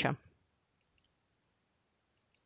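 The last syllable of a spoken word, then near silence broken by a few faint, short clicks about half a second to a second in.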